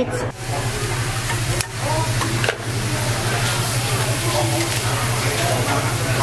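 Thinly sliced beef brisket sizzling on a tabletop Korean barbecue grill: a steady, even hiss, over a low steady hum, with faint voices in the background.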